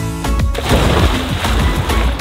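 A splash as a person jumps feet-first into a swimming pool, a rush of churning water starting about half a second in, over background music with a steady bass beat.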